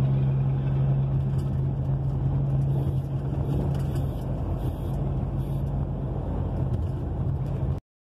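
A heavy truck's diesel engine running at a steady cruise, heard from inside the cab as a low, even drone under road and wind noise. The sound cuts off suddenly near the end.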